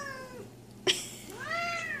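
Tabby cat meowing: a call trails off at the start, a short click sounds about a second in, then one meow rises and falls in pitch near the end.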